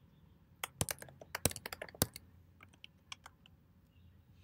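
Typing on a computer keyboard: a quick run of key presses in the first two seconds, then a few scattered keystrokes.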